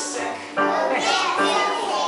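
Young children singing together over accompanying music, with a brief dip about half a second in.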